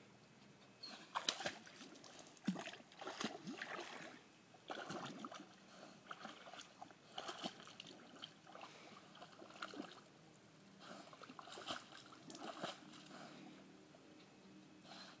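A dog moving through shallow pond water, making faint, irregular splashing and sloshing.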